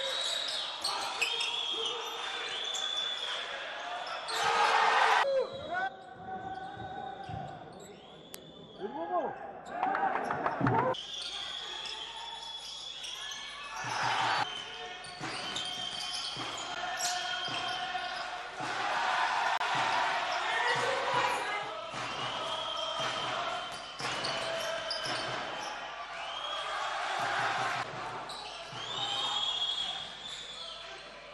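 Live basketball court sound in a large arena: the ball bouncing on the hardwood floor and sneakers squeaking in short high chirps as players run and cut, with indistinct voices around the court.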